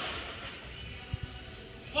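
Fairly quiet gym sound with faint background music, and two soft knocks a little over a second in from a heavily loaded barbell being worked on the rack pins between deadlift reps.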